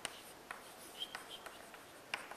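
Chalk writing on a chalkboard: faint short taps and scratches of the strokes, with a brief high squeak about a second in.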